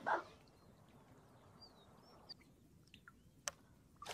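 Quiet open-water air with a few faint, short bird chirps and several sharp clicks, the loudest about three and a half seconds in.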